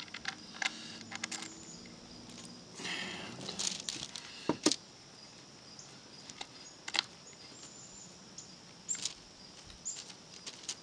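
Small metal hardware being handled and fitted into a hole in a wooden board: scattered sharp clicks and taps, the loudest about halfway through, over a low outdoor background.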